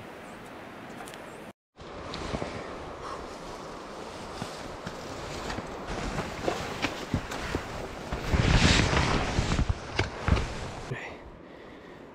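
Someone pushing on foot through dense ferns and brush: leaves and stems rustle and swish against clothing and the camera, with footsteps in the undergrowth. It gets louder for a second or two about two-thirds of the way through.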